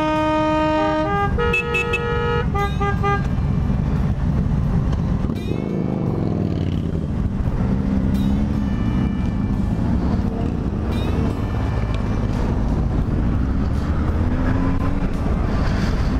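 Motorcycle engines running as a group of bikes moves off, with a horn playing a short tune of stepped notes during the first three seconds. The engine pitch then rises as the bike accelerates, about six to eight seconds in and again briefly later.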